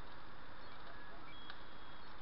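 Small homemade Tesla coil, driven by a two-stage MOSFET driver, arcing to a screwdriver tip: a faint steady hiss, with a single sharp click about one and a half seconds in.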